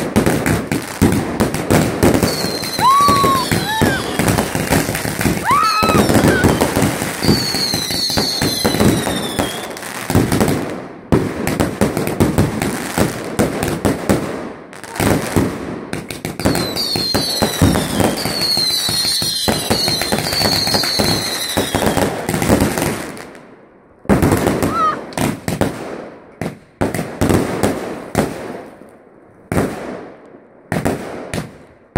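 Aerial fireworks going off in a dense run of bangs and crackling, with shrill descending whistles in two spells. After a pause about three-quarters of the way through, they thin out to scattered bangs.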